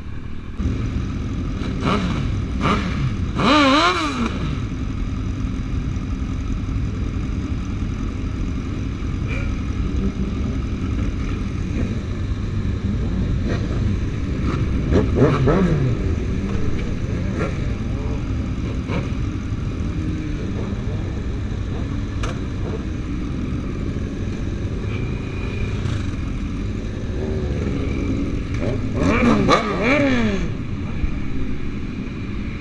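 Several sport motorcycles running at low speed in a group, a steady engine drone with engines revved up and back down three times: a few seconds in, about halfway through, and again near the end.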